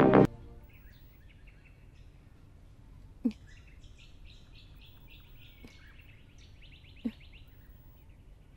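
Background music cuts off just after the start, leaving quiet ambience with birds chirping repeatedly. Two short knocks sound, about three and about seven seconds in.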